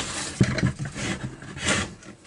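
Handling noise from a string trimmer's plastic throttle handle and engine housing: rubbing and rustling, with a sharp knock about half a second in and a louder rustle near the end, as the freshly reassembled throttle trigger is worked to check it.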